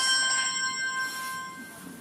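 A phone ringtone: one bell-like chime tone, struck just before and fading away over about two seconds.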